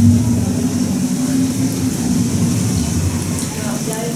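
Deep low rumble from the animatronic dragon's sound effects, fading away about two and a half seconds in; no roar.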